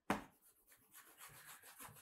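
A brief sharp noise at the start, then faint, irregular scratchy rubbing of a stylus scrubbing back and forth across a drawing tablet's surface while erasing.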